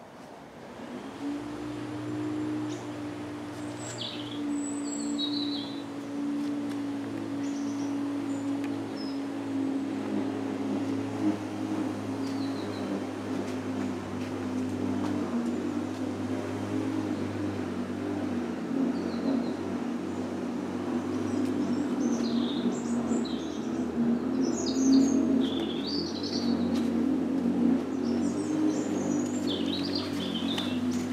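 Small birds chirping now and then over a steady low mechanical drone, like a motor running, which comes in about a second in and holds, growing slightly louder.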